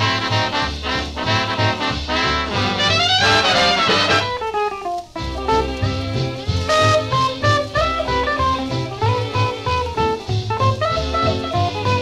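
Swing dance-band music in the 1930s–40s style, with a steady pulsing bass beat. A rising run comes about three seconds in, and a brief drop in the music about five seconds in, before the band carries on.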